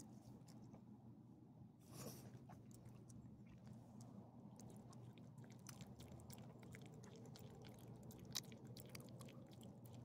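A small dog chewing bits of ham, faint and close: a run of small wet clicks and smacks from her mouth, with a louder one just after eight seconds.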